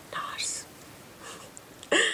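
A woman's breathy whispering, without a clear pitched voice, breaking into a voiced laugh right at the end.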